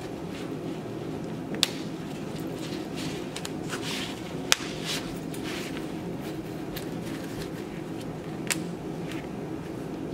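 Three snap fasteners on a stroller seat pad clicking shut one by one, a few seconds apart, as the fabric is pressed onto the metal crossbar, with fabric rustling between the clicks.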